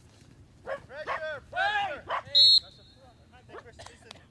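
Players shouting across the pitch, then a short, shrill referee's whistle blast about two and a half seconds in, the loudest sound, stopping play.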